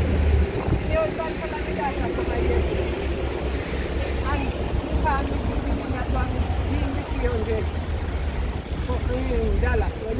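Street traffic with double-decker buses running close by: a steady low engine rumble under people talking.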